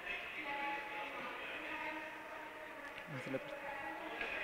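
Faint background murmur of voices, with a brief voice sound about three seconds in.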